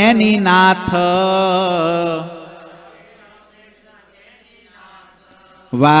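A man's solo voice chanting a Hindu devotional hymn (kirtan) into a microphone, holding a long wavering note that fades out about two seconds in. After a quiet pause of about three seconds he begins the next line near the end.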